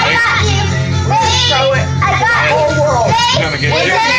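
Karaoke: voices, a child's among them, singing and shouting through a handheld microphone over loud backing music with a steady bass line.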